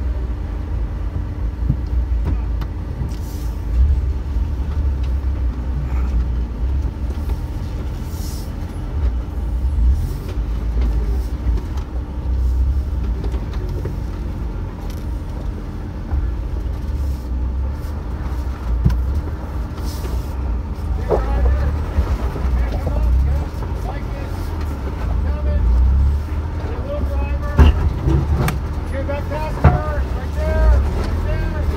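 A 2021 Ford Bronco's engine running at low speed as it crawls over rock, a steady low rumble with a few brief knocks.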